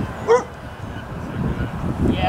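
A single short, high yelp about a third of a second in, the loudest sound here, over a low rumble of wind on the microphone.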